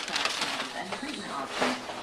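Indistinct talk in a small room, with scattered rustles and light knocks as a handheld camcorder is swung around.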